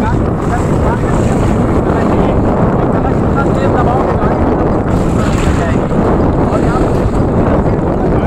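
Wind buffeting the microphone in a loud, steady rumble, with sea waves washing on the beach behind it.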